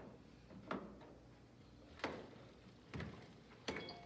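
A spatula knocking against the side of a glass mixing bowl while stirring thick zucchini fritter batter: about five soft, irregular knocks, the last one followed by a brief ringing tone.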